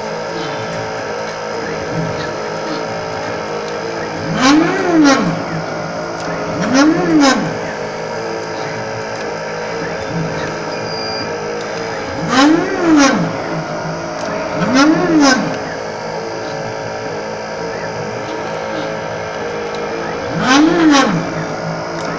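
NeoDen4 desktop pick-and-place machine at work: its stepper motors whine up and down in pitch with each move of the placement head, in pairs every two to three seconds, over a steady machine hum. Each run of moves carries the head between the component tray and the board to place electrolytic capacitors.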